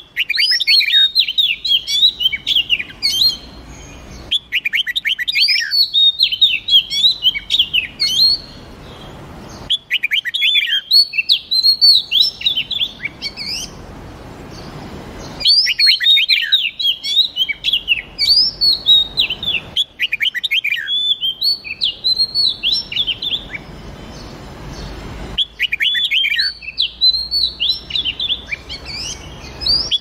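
Red-whiskered bulbul and oriental magpie-robin song: bursts of rapid, high chirps, each a few seconds long, repeating about six times with short pauses between.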